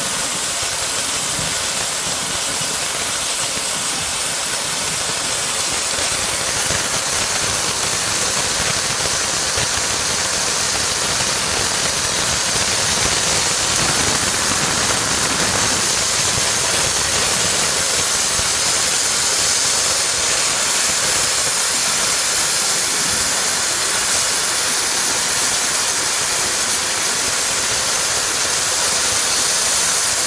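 Oxy-acetylene cutting torch hissing steadily as its jet cuts through steel plate.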